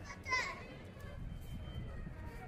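A child's brief high-pitched shout a moment after the start, over a steady murmur of people and outdoor hubbub.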